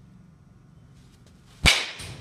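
A baseball bat strikes a ball once, about three-quarters of the way in: a single sharp crack with a short ringing decay.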